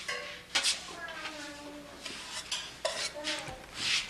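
Dishes and utensils being handled: a series of sharp clinks and scrapes, the loudest about half a second in and just before the end.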